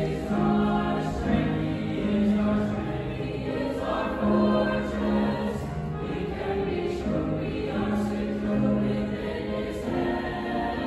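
Mixed school choir singing a sacred piece in parts, holding long notes and changing chords, with piano accompaniment.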